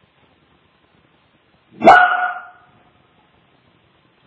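A small dog barking once, a single short, loud bark about two seconds in.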